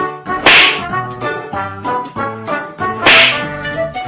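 Two loud whip-like slap sound effects, about half a second and three seconds in, over comic background music with a bouncy beat.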